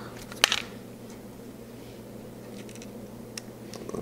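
A sharp plastic-and-metal click about half a second in, then a few faint ticks near the end, from a hard-drive tray and drive screws being handled in a PC case's drive cage, over a steady low hum.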